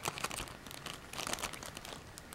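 Crinkly plastic sleeve of a sealed booster pack being handled, with light, irregular crackles and clicks.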